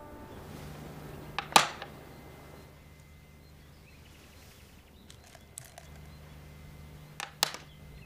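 Quiet room tone with a faint low hum and a few sharp clicks or knocks: a loud one about a second and a half in, and two more near the end. Held music notes stop just as it begins.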